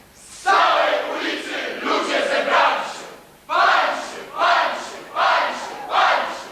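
A group of young voices shouting together in unison, in about six loud bursts that each start sharply and fade away.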